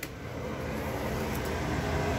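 A door latch clicks as an interior door is opened by its knob, then a steady fan hum grows louder over the first half second and keeps running.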